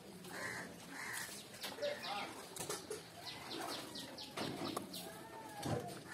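Close-miked eating sounds: wet chewing and repeated sharp lip smacks and mouth clicks as rice and pork curry are eaten by hand.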